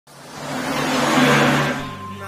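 A vehicle passing: a rush of noise that swells to a peak and fades within about two seconds, over a steady low engine hum.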